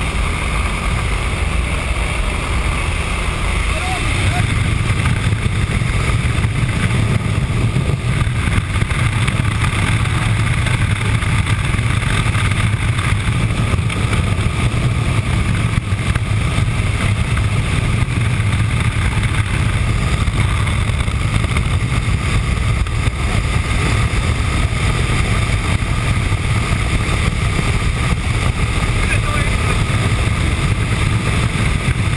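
Steady in-cabin drone of a small jump aircraft's engine in flight, mixed with wind rushing past the open jump door. The low drone grows louder about four seconds in.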